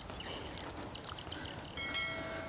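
Faint open-field ambience with a steady thin high-pitched tone and a few faint short chirps. Just before the end a short electronic chime of several tones sounds.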